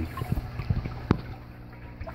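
Hydroponic system running: a steady low pump hum with water gurgling through the reservoir and tubing, and a few small clicks.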